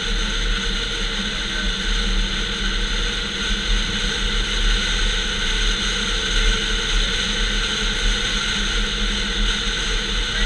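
Steady rush of wind and road noise from a 2007 Mazda3 hatch driving at speed, picked up by a camera mounted outside on the car. The level stays even throughout, with no rise or fall in pitch.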